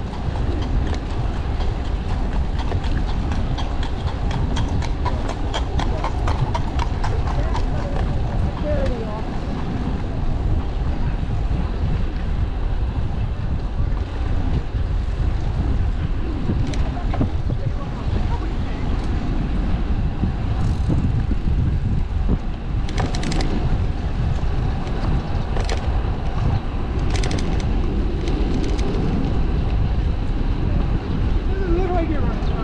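Wind rumbling on the microphone of a bicycle riding along a park road, with people's voices passing by. For the first several seconds a horse's hooves clip-clop on the pavement in a quick, even run, and scattered sharp clicks come later.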